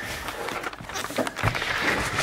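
Rustling and knocking handling noise from a camera being moved about, with a dull thump about one and a half seconds in.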